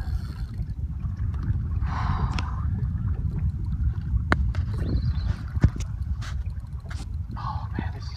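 Steady low rumble of wind and water noise aboard a small boat at sea, with a few sharp clicks in the second half.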